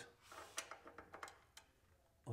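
Faint, scattered metal ticks and clicks from a T-handle hex wrench loosening the bolts on an aluminium fence bracket.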